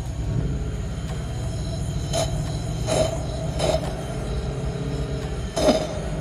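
Nissan VK56VD 5.6-litre direct-injection V8 running on a fast idle, held around 2,000 RPM, rough and a little shaky as it draws Seafoam in through a vacuum line. A few short noises break over the steady engine rumble.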